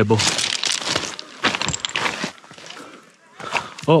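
Irregular crunching and scraping of footsteps on loose rock and scree close to the microphone. It is dense for about two seconds, then dies down.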